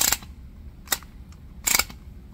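Pumped-up air-powered toy car engine giving off three short, sharp spurts of escaping air, about one a second, as its wheels turn; the pressure is leaking out.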